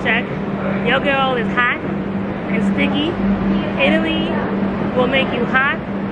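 Short snatches of a woman's voice with sliding pitch, over a steady low hum.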